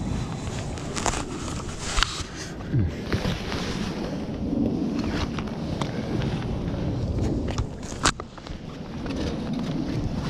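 Low wind rumble on the microphone with rustling and several sharp knocks, the loudest about two seconds in and about eight seconds in, as a landing net is handled to lift a big catfish over a railing.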